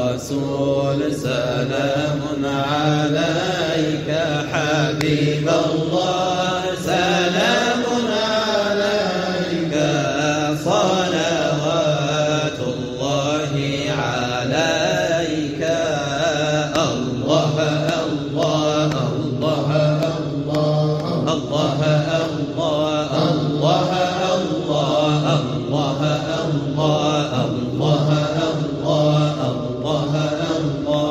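Sufi dhikr chanting by a group of men: a low steady drone of voices held under a lead voice whose long, ornamented line rises and falls.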